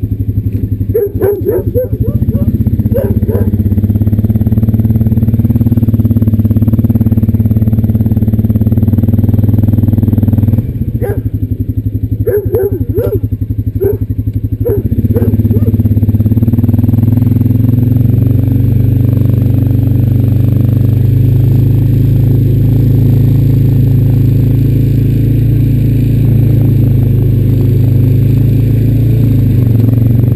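Honda Rancher 420 ATV's single-cylinder engine running steadily, dipping a little past ten seconds in and picking up again about fifteen seconds in as the quad rides off. A dog barks in short runs near the start and again between about eleven and fifteen seconds in.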